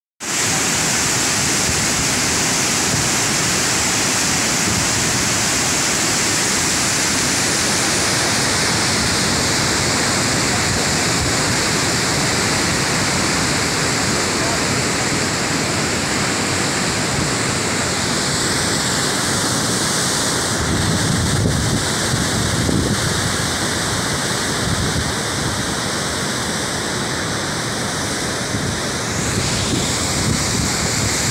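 Water gushing out of a lift-irrigation pipeline's circular delivery outlet and pouring over its rim into a concrete chamber, a loud steady rushing.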